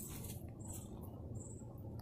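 Quiet outdoor background: a low steady rumble with a few faint, short, high-pitched chirps.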